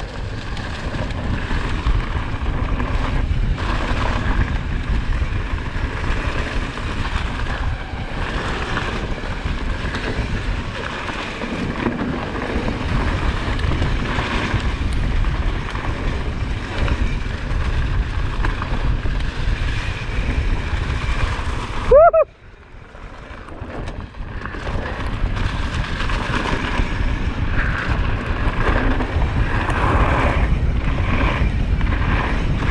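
Wind buffeting the camera microphone with the rolling rumble and rattle of a mountain bike descending a loose dirt trail at speed. About two-thirds of the way through there is a brief pitched squeal; the noise then drops off suddenly and builds again over a couple of seconds.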